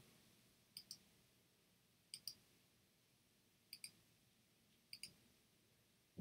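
Four faint computer mouse-button clicks, spaced a second or more apart, each a quick double tick of press and release, as sketch lines are selected one at a time.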